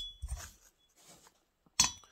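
Light metallic clinks as a Hyway 038 chainsaw piston and cylinder are handled on a bench: a small ringing clink at the start, a few soft bumps, and a sharper clink near the end.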